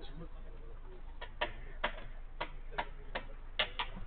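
A run of about eight sharp, short impacts, a few tenths of a second apart, through the second half.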